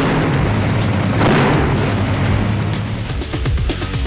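Top fuel dragster's supercharged nitromethane V8 starting up and running with a loud blast, heaviest about a second in. It gives way to music after about three seconds.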